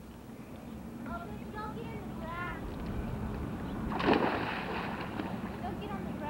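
A short splash about four seconds in as a child jumps into a swimming pool, with faint children's voices calling in the background.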